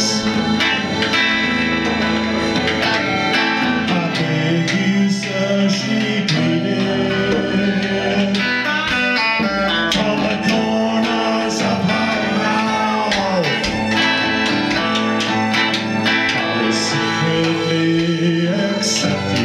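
Live trio playing a folk-rock song: electric guitar, accordion and djembe.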